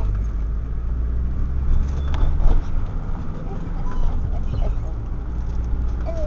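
Steady low rumble of a car in motion, heard from inside the cabin, with faint voices in the background.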